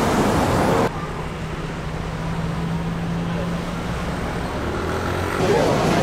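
Road traffic at a city junction: engines running with a low steady hum under a broad traffic noise. A louder rush of noise cuts off about a second in, and voices come in near the end.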